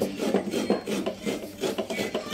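Hands rubbing and scraping the contents of a plastic basin, a rasping stroke repeated about four times a second.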